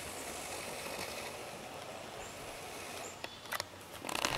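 Steady outdoor background noise, an even rushing hiss, with a faint bird chirp about two seconds in and a few short handling clicks near the end.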